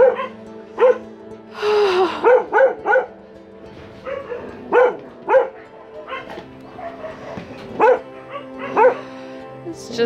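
Caged dogs barking over and over, about one or two barks a second at irregular spacing, with one longer call about two seconds in. Steady background music plays underneath.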